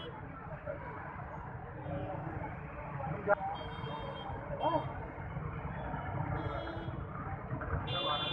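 Busy street noise: a crowd talking over traffic, with short high-pitched beeps of vehicle horns sounding several times. A single sharp click comes about three seconds in.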